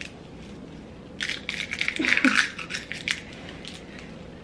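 Thin plastic shopping bag rustling and crinkling in hands for about two seconds, with a short vocal sound in the middle.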